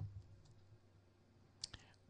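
Near silence during a pause in a spoken talk, with the tail of a word fading at the start and a brief faint click shortly before speech resumes.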